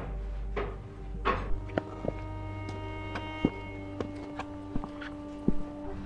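Background music: sustained held tones with scattered soft percussive hits and a few swishes in the first second and a half.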